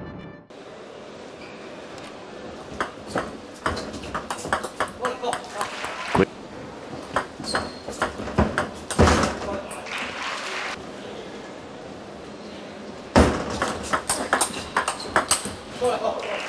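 Table tennis rallies: the ball clicking in quick succession off the players' bats and the table, in two runs of strokes with a short lull between them.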